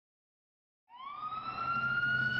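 Police car siren starting about halfway in, its wail rising slowly in pitch, over a low rumble of traffic.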